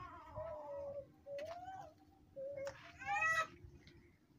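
A cat meowing four times in short, wavering calls, the last the loudest.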